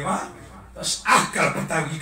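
A man's voice preaching through a microphone in short, emphatic bursts.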